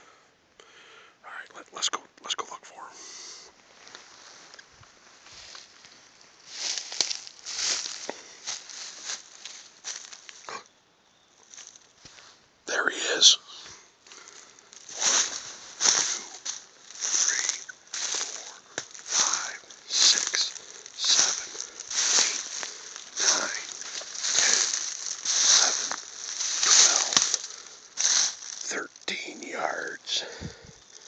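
Footsteps crunching through dry fallen leaves, irregular at first and then a steady step about once a second through the second half, with one louder scrape about halfway through.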